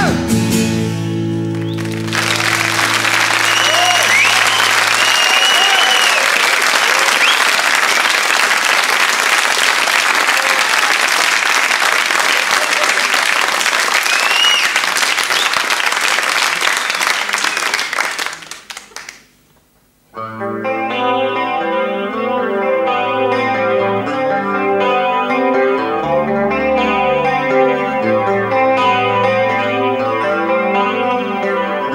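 The last chord of a song rings out under loud audience applause, which runs for about sixteen seconds and then dies away to near silence. About two-thirds of the way in, an electric guitar starts a repeating picked chord pattern, the intro of the next song.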